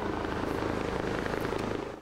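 Sikorsky S-64 Skycrane heavy-lift helicopter hovering with a slung load: steady rotor and turbine noise with a fast, even blade beat.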